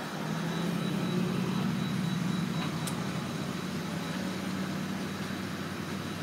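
Car engine idling: a steady low hum, with a faint steady high whine above it.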